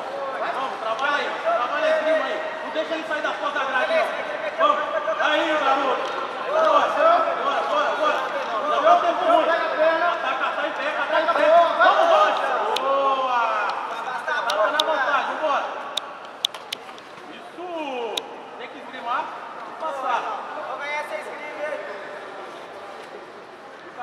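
Several men shouting encouragement at once, overlapping voices in a large hall, busiest in the first half and thinning out later, with a few sharp clicks in the second half.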